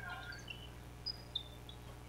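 Faint basketball arena sound: scattered brief high squeaks of sneakers on the hardwood court, over a steady low electrical hum.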